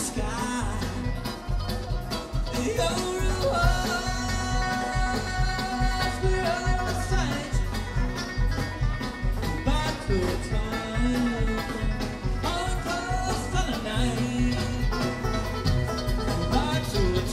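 A live bluegrass band plays through a PA, heard from the crowd. Mandolin, acoustic guitar, banjo and electric bass play over a steady beat.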